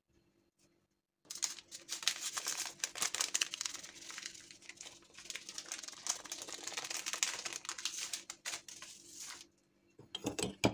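A small paper sachet crinkling and rustling under the fingers as it is handled and shaken out over the grated filling, a dense crackle of small clicks that starts about a second in and stops shortly before the end, over a faint steady hum.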